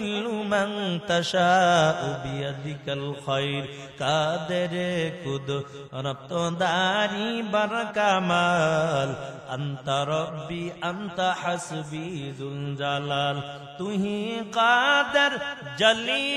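A male preacher's voice chanting in a drawn-out, wavering melody, with long held notes sliding up and down: the sung style of a Bengali waz sermon.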